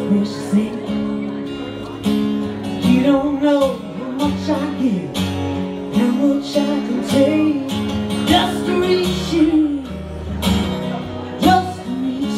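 A woman singing into a microphone while strumming an acoustic guitar: a live solo acoustic song, amplified through a PA.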